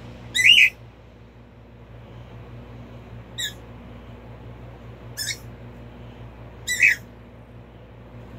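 A cat meowing: four short, high-pitched meows a second or two apart, the first and last the loudest.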